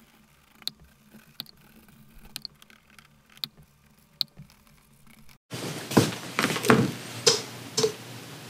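A glue brush spreading a first coat of glue onto leather belt blanks and liners: faint taps about once a second, then, after an abrupt break, louder brushing strokes several times a second.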